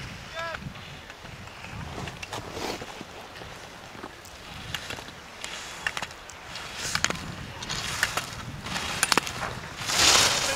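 Slalom skis scraping and carving over hard-packed snow, with scattered sharp knocks as gate poles are struck, and spectators calling out near the start.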